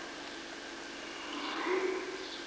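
Steady hiss of an old film soundtrack, with a faint, brief rising vocal sound near the end.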